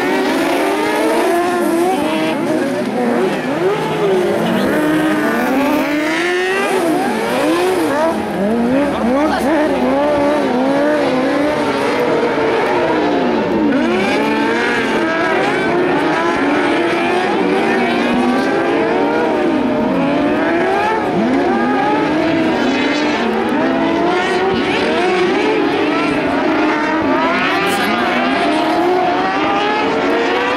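Several carcross buggies racing on a dirt track, their motorcycle-derived engines revving up and down through the gears. The many engine notes overlap and keep rising and falling in pitch.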